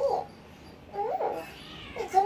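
Kitten meowing: the end of one call right at the start, then a single short meow that rises and falls in pitch about a second in.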